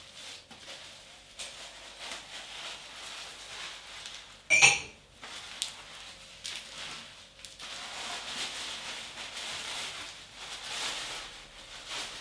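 Kitchen handling sounds of cups and utensils, with soft scattered clicks and one sharper, louder clatter about four and a half seconds in. A soft steady hiss runs through the second half.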